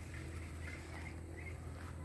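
Quiet outdoor background: a steady low hum with a few faint, brief chirps.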